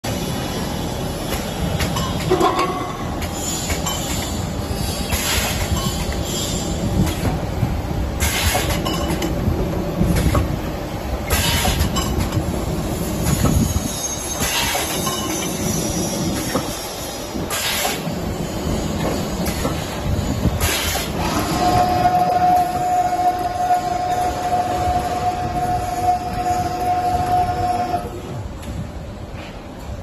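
Automatic vacuum can seaming machine and its chain conveyor running: a steady mechanical rumble and clatter, with a short hiss about every three seconds. A steady high whine comes in about three-quarters of the way through.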